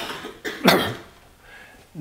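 A man coughing, with a short burst at the start and a louder cough just under a second in.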